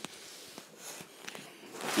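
Footsteps with clothing rustle: a few soft, irregularly spaced steps, growing louder near the end.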